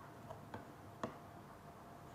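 Faint ticks of a stylus tapping on a tablet while words are handwritten: a few light clicks, the sharpest about a second in, over low hiss.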